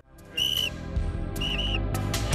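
Background music cue with short high whistle-like notes, one about half a second in and a quick pair near a second and a half, over a low steady bass, growing fuller toward the end.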